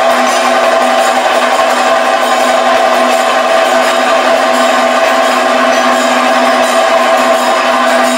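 Kathakali percussion accompaniment: drums played loudly and continuously, with ringing metal cymbals over them.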